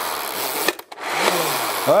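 The two flywheels of a Nerf Zombie Strike RevReaper blaster whirring, spun by hand through its pulled-back lever, their pitch falling as they wind down. The first whir fades out with a click, and a second pull about a second in starts a new whir that again drops in pitch.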